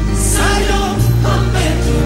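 Music with singing voices over held bass notes; the bass moves to a new note about a second in.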